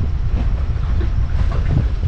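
Wind buffeting the microphone: a loud, uneven low rumble with no steady engine note.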